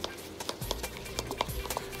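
Tint brush stirring hair toner and developer in a plastic tint bowl, the brush tapping and scraping against the bowl in quick, irregular clicks.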